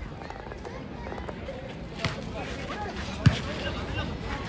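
Volleyball being struck by hand twice: a sharp slap about halfway through, then a louder one about three quarters in, as in a serve and its reception. A murmur of crowd voices runs underneath.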